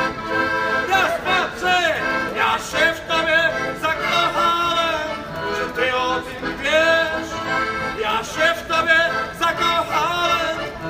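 Piano accordion played with a man singing along in wordless syllables, a rapid run of "po po po".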